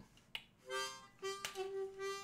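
Harmonica in a neck rack blown briefly: a short chord, then a longer held note. There are a couple of clicks as the rack is adjusted.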